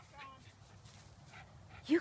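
A Cairn Terrier gives one brief, faint whine near the start while digging in grass.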